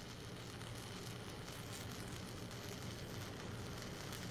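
Faint, steady crackling hiss of a stick-welding (SMAW) arc burning an E6010 electrode.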